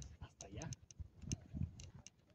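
Footsteps on a dirt path with camera handling noise: a few soft, uneven thumps and sharp clicks as someone walks with the camera.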